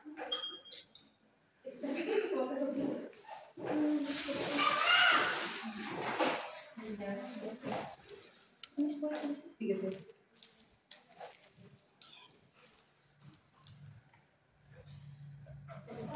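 A woman in labour making strained, breathy vocal sounds without words, loudest in a long outburst about four to six seconds in, among quieter voices nearby.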